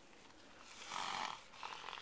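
A horse snorting close by: a forceful noisy breath out through the nostrils about a second in, followed by a rapid rattling flutter.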